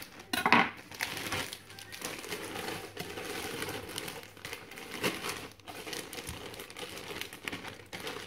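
Plastic bag of frozen spinach crinkling and rustling as it is handled, in an irregular run of crackles, loudest about half a second in.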